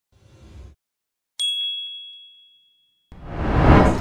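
A single bright ding sound effect in a logo intro, struck about one and a half seconds in and ringing out over about a second. Near the end a whoosh swells up.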